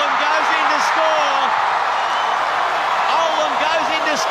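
Large stadium crowd cheering a try, a dense steady noise, with a man's voice calling out over it.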